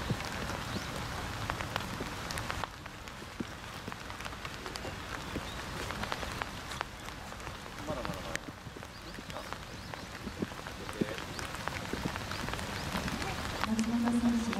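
Rain falling, with an even hiss and many small drop taps close to the microphone. The hiss drops a little about three seconds in.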